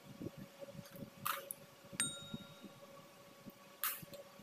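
A single short bell-like ding about halfway through, from a subscribe-notification bell sound effect. Faint rustling and ticking of wires being handled against a ceiling fan's wound stator, with two brief rustles.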